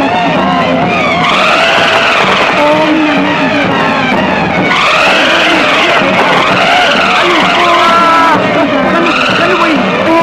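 Film soundtrack sound effects: a loud run of swooping tones, each rising then falling over about a second, repeating through the stretch over shorter held tones.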